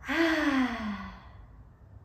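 A woman's big audible sigh on a deliberate exhale, voiced and falling in pitch, lasting about a second.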